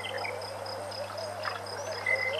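Waterhole ambience: an insect chirping in a steady rhythm, about three chirps a second, over a low, wavering animal call that runs throughout.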